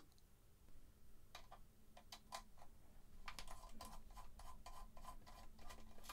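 Faint, irregular light clicks and ticks of a precision screwdriver working the small screws in a DAC's metal chassis, coming thicker from about halfway.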